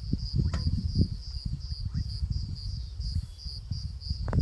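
An insect chirping in a high, evenly repeating pulse, over an irregular low rumbling.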